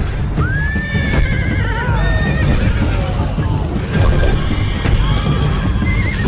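A horse whinnies about half a second in: one long neigh that rises, then wavers as it falls. A shorter neigh follows near the end, over dramatic music with heavy low drumming.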